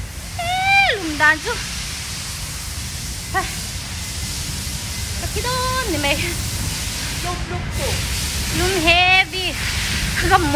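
A woman speaking in short phrases with pauses between them, over a steady low rumbling background noise.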